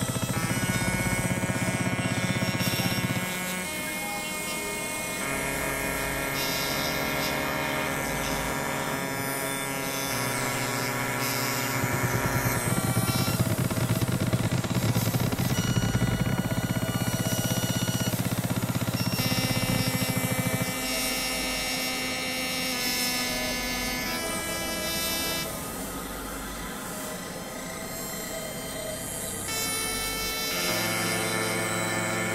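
Experimental electronic synthesizer music: dense layers of steady held tones that shift to new pitches every few seconds. A heavy low drone sits under it for the first three seconds and again from about ten to twenty seconds in.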